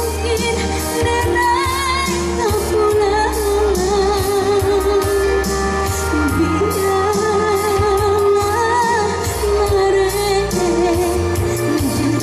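A woman singing a Minang pop song into a microphone, holding wavering notes, over amplified band backing with a steady beat and bass.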